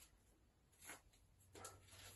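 Near silence: room tone with two faint, brief rustles of rope being handled, about a second in and near the end, as a double bowline is pulled tight.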